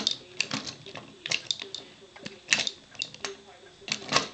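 Plastic Transformers action figure (G1 Cyclonus) being handled and stood up on a wooden table: a run of irregular sharp clicks and taps from its plastic parts and feet.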